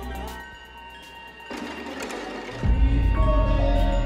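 Film trailer score: held tones, then a swell of noise about halfway through, and a sudden deep bass hit that sustains near the end.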